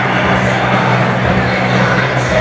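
Loud, steady live-concert sound in a packed stadium: amplified music with held low notes, over the noise of a large crowd.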